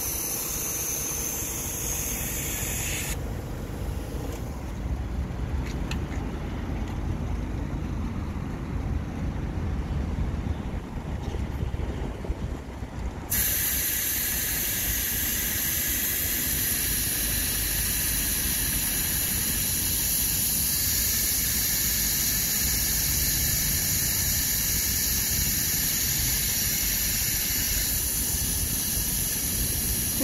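Compressed air hissing at a car tyre's valve as the tyre is inflated, over a steady low rumble. About 13 seconds in, the hiss suddenly gets louder and brighter and then holds steady.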